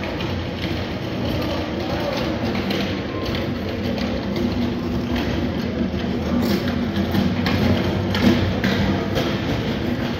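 Indoor shopping-centre ambience: a steady hum of the large hall with indistinct distant voices and scattered light knocks, busier in the second half.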